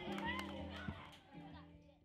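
Background music with children's voices chattering over it, fading out steadily toward the end.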